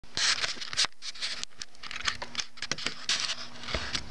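Irregular rustling, scratching and clicking of a handheld camera being handled and moved, with no guitar being played, over a faint steady hum.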